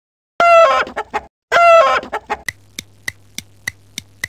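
Two loud chicken calls, each a strong clucking note breaking into short stuttering pulses, about a second apart. Then a music track starts near the end with a steady beat of sharp ticks about three a second over a low hum.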